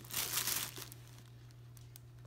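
Thin clear plastic bag crinkling as a hand handles the can wrapped inside it. The crinkling is loudest in the first second, then fades to a few faint rustles.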